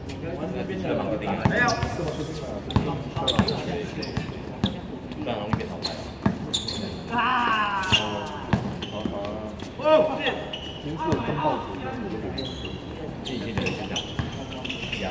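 A basketball bouncing on an outdoor hard court in irregular thuds, with players' voices calling out over the play.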